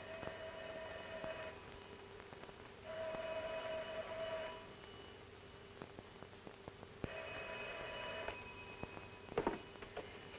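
Telephone bell ringing three times, each ring lasting about one and a half seconds with a few seconds between rings, over a steady low hum on an old film soundtrack. A brief, sharper sound comes just before the end.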